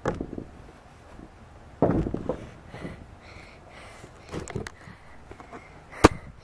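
Thumps and knocks from someone clambering over a wooden rail, the heaviest thump about two seconds in, with a few lighter knocks later.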